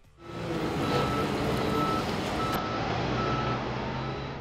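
TW log stacker's engine running, with its reversing alarm beeping four times, evenly spaced about 0.7 s apart, starting about a second in.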